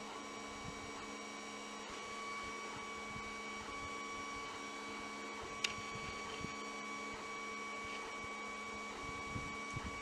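Steady electrical hum made of several held tones over a low hiss, with one faint click about five and a half seconds in.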